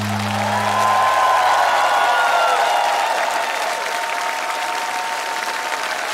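Studio audience applauding over the end of a song. A low held note dies away in the first two seconds, and higher held tones linger under the clapping.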